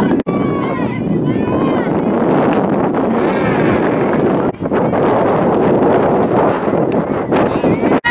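Wind buffeting the camera microphone at a softball field, with high voices of players and spectators calling out and cheering. The sound breaks off sharply twice, where one game clip is cut to the next.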